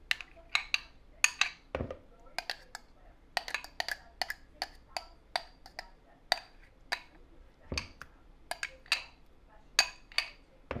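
A utensil knocking and clicking against a mixing bowl as mashed sweet potato mixture is scooped into it: irregular sharp knocks, a few each second, with two duller thuds.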